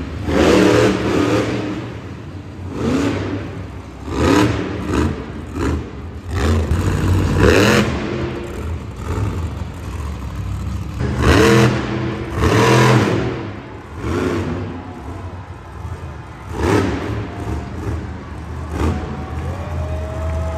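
Monster truck supercharged V8 engines revving hard in repeated throttle bursts, each rising and falling in pitch, over a steady low rumble.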